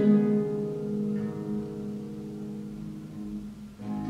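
Solo concert harp playing slowly: a chord plucked and left to ring, with a further note added about a second in, the sound dying away until new notes come in at the very end.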